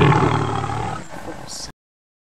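A person's voice, a long drawn-out loud vocalisation that fades over about a second and a half, then cuts off suddenly.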